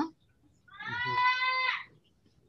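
An animal's call: one drawn-out cry at a steady high pitch, lasting a little over a second.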